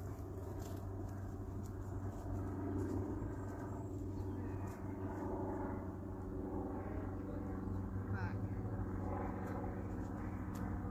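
A steady low mechanical hum, as of an engine or machine running.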